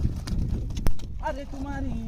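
Low rumbling wind noise on the microphone, a single sharp click a little under a second in, then a man's drawn-out voice calling out in the second half.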